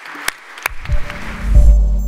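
A few scattered hand claps of applause, then closing music starts about a third of the way in, with a heavy bass that swells up and is loudest near the end.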